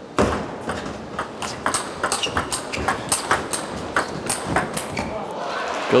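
Table tennis rally: a celluloid-type ball clicks sharply off the bats and the table about two to three times a second, over crowd noise in a large hall. The crowd noise rises near the end as the rally finishes.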